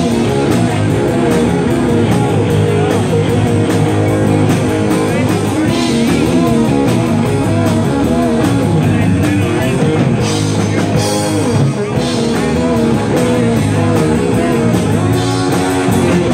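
Live rock band playing loudly: electric guitars over a drum kit, with cymbal crashes a few times.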